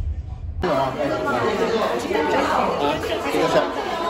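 Crowd chatter in a busy restaurant: many voices talking over one another, with a few small clicks. It cuts in about half a second in, replacing a low car-cabin rumble.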